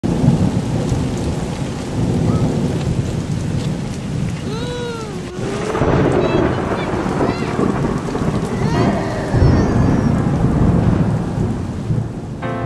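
Heavy rain pouring down with thunder rumbling, a loud, steady downpour. A few short rising-and-falling pitched sounds cut through the rain around the middle.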